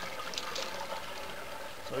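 Water poured steadily from a bucket into a PVC first-flush diverter standpipe, splashing as it runs down the pipe at a rate meant to match a torrential downpour.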